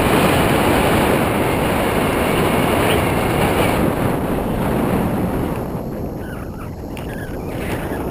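Wind buffeting an action camera's microphone during a tandem paraglider flight: a loud, steady rush of noise that eases a little after about five seconds.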